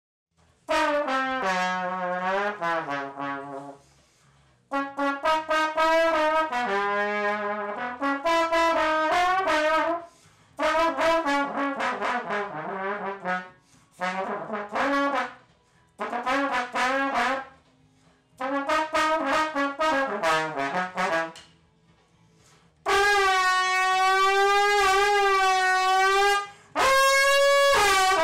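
Slide trombone played unaccompanied in a string of short melodic phrases separated by brief pauses. Near the end it holds one long note with vibrato, then moves to a higher note.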